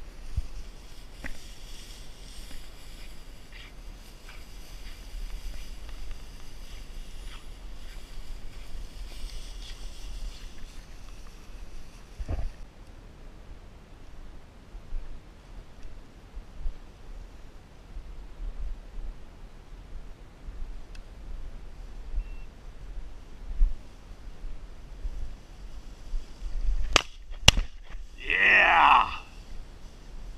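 Footsteps swishing through tall dry prairie grass with wind rumbling on the microphone. Near the end, two sharp shotgun shots about half a second apart, followed at once by a brief loud call.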